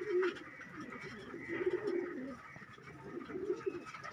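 Domestic pigeons cooing softly, several low wavering coos coming and going.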